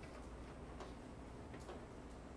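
Library reading-room ambience: a steady low room hum with a few faint, small clicks, one a little under a second in and two more near the end.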